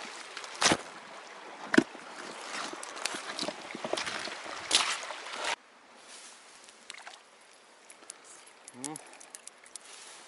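Rushing river water with sharp knocks and rustling from handling on a pebble bank; the loudest knocks come at about one and two seconds in. About halfway through it cuts off suddenly to a much quieter riverside with a few light clicks.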